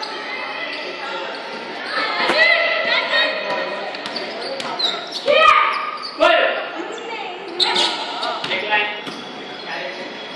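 Bare feet stamping on a hard floor as taekwondo students perform a form: sharp thuds about two, five and a half and six seconds in. Children's voices echo around the large hall, with the loudest voice coinciding with the thud at five and a half seconds.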